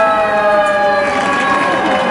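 Fire engine siren wailing loudly, its pitch sliding slowly downward.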